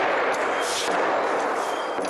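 Metal sound sculpture being worked by a bare foot pressing on its metal bar: a continuous, harsh metallic scraping noise, with a brighter scrape a little under a second in.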